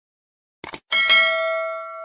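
Subscribe-animation sound effect: a quick double mouse click a little over half a second in, then a bell ding, struck twice in quick succession, whose several tones ring on and fade slowly.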